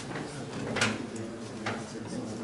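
Indistinct murmur of voices in a room, with a short sharp sound a little under a second in and a fainter one near the end.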